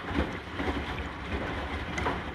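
Hotpoint NSWR843C washing machine in its final rinse: the drum turning, wet laundry tumbling and sloshing in the rinse water, with soft thuds as the load falls.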